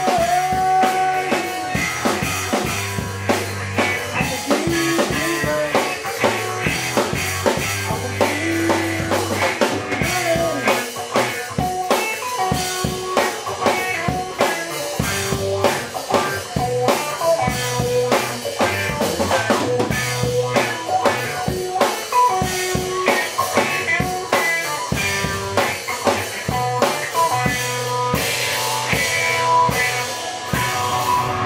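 Live Mississippi juke-joint style blues: guitar riffing with bent, sustained notes over a busy, steady drum kit beat with snare, bass drum and rimshots, no singing.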